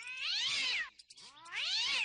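A cat giving two long, drawn-out meows, each rising and then falling in pitch, with a brief gap between them. The cat is enraged.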